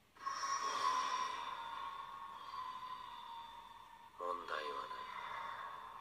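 Soundtrack of an anime episode: a steady, high, eerie held tone swells in sharply just after the start and slowly fades. About four seconds in, a character's voice begins speaking over it.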